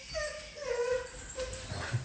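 Pit bull puppy whining, several short high cries in a row, each falling slightly in pitch.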